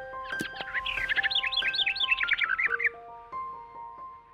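Short logo jingle: soft held musical notes with a quick run of bird chirps over them, the chirps stopping about three seconds in and the notes carrying on more quietly.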